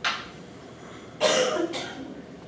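A person coughing: a short burst at the start, then a louder cough of two quick parts a little past the middle.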